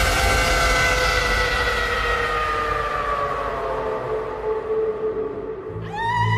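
Electronic dance music breakdown: a sustained synth chord slides slowly down in pitch and fades, sounding like a siren winding down. Right at the end a new steady, string-like section comes in.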